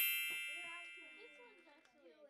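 A bright metallic chime rings, struck just before and fading away steadily, with several high ringing tones. Faint voices murmur beneath it.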